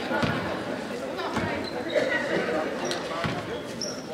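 A basketball bouncing a few times on a gym's wooden floor, the thuds spaced unevenly, with voices chattering in the hall.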